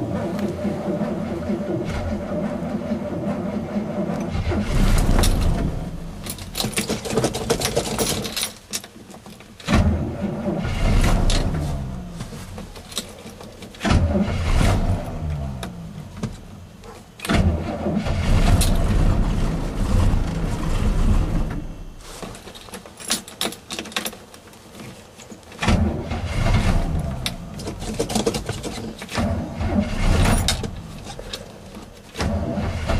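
A 1972 GMC Sierra's engine, cold-soaked at −12 °F after sitting a long time, being cranked by its starter in several long bursts with short pauses between. It does not start.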